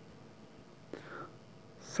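Quiet pause in narration: faint steady hum of room tone, with a soft breathy mouth sound from the narrator about a second in. The hiss of the next spoken word begins at the very end.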